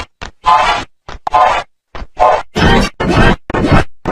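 Heavily effected, pitch-shifted audio chopped into short stuttering bursts with brief silences between, about two a second, each burst pitched and voice-like; the warped sound of a 'G Major' audio-effect edit.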